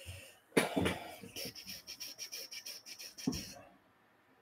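A man coughing: one loud cough about half a second in, then a quick run of short, evenly spaced sounds, and another cough near the end.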